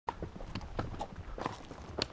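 Hooves of a mule and a horse walking on a granite rock trail: an irregular clip-clop of several sharp strikes a second.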